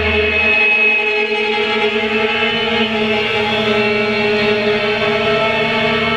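Violin bowing long sustained notes, layered into a steady, chant-like drone of held tones. A low hum underneath fades out within the first second.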